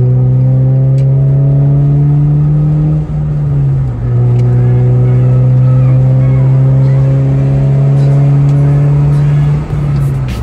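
Car engine accelerating, its pitch climbing slowly, dropping back about three to four seconds in as if shifting gear, then climbing again and dropping once more near the end.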